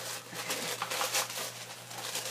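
Cardboard box and paper packaging rustling as they are handled and opened by hand.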